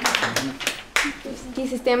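A small group applauding by hand, the clapping thinning out and dying away about a second in.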